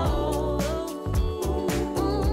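Background music: a song with a singing voice over a sustained bass line and a steady drum beat.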